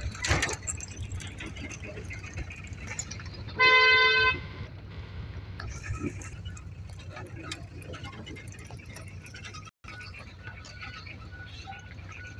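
Inside a car's cabin on a dirt road: a steady low engine and road rumble with light rattles, and a single short car-horn honk about four seconds in, the loudest sound.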